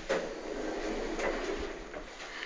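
Elevator doors sliding open, a steady rumbling slide of the door panels and their operator.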